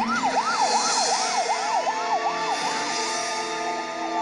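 Emergency-vehicle siren in a fast yelp, its pitch swooping up and down about four times a second. A slower wailing siren tone joins it about halfway through.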